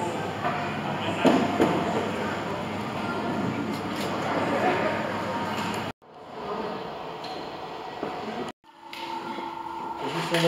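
Airport terminal ambience: a steady hum with indistinct voices in the background. It breaks off abruptly about six seconds in and again near the end, with a slightly different ambience after each break.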